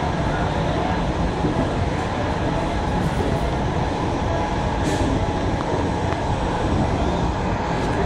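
Express passenger train pulling slowly out of a station, heard from aboard the coach: a steady rumble of wheels rolling on rail, with a short hiss about five seconds in.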